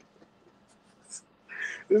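A mostly quiet pause in a man's talk, with a short hiss about a second in and a breathy exhale from the man, laughing, just before he speaks again.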